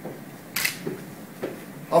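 Quiet room tone with one short, sharp click-like noise about half a second in and a few faint small sounds after it; a man's voice begins right at the end.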